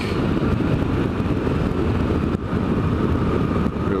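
Motorcycle engine running steadily at road speed, mixed with heavy wind rush on the rider's microphone.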